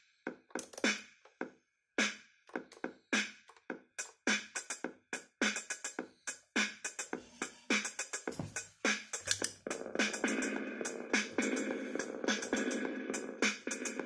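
Behringer RD-6 analog drum machine playing a beat through a small Marshall mini amp, with thin bass. From about ten seconds in, a dense echo-reverb wash fills in behind the hits.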